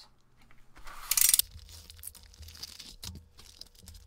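A padded paper envelope being torn open, with one loud rip about a second in, followed by softer crinkling and rustling of the plastic packs as the contents are handled.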